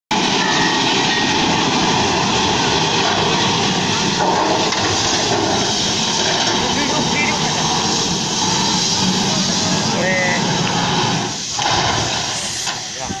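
Loud continuous rushing noise as a tanker truck crashes and slides to a stop, with men shouting over it; no single impact stands out.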